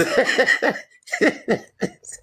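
A person laughing hard in short bursts, two runs of ha-ha pulses with a brief gap between them.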